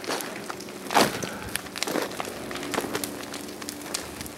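Burning brush piles crackling, with irregular sharp pops over a low steady hiss; one louder pop about a second in.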